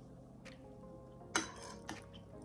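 A metal spoon clicking against a ceramic mixing bowl: a faint tap, then a sharper clink about a second and a half in and a lighter one just after.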